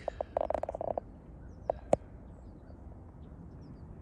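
An animal's harsh, rapidly pulsed call, lasting about a second, followed by two short sharp clicks just before the two-second mark, then a faint steady outdoor background.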